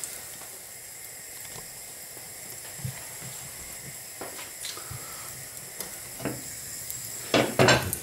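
Pancake batter frying in an oiled non-stick frying pan: a steady quiet sizzle with a few small ticks as the batter bubbles and sets. A brief louder sound comes near the end.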